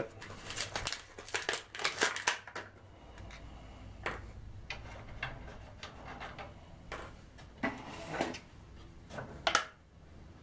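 Hands handling hard plastic parts and a plastic glue bottle: a quick run of clicks and rustles in the first two seconds, then scattered taps and scrapes, the sharpest click near the end.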